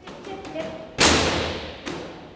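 A dog-agility teeter board tips and bangs down onto the floor under the dog's weight about a second in. The loud bang echoes and fades through the hall, and the board bounces once more with a smaller knock just under a second later.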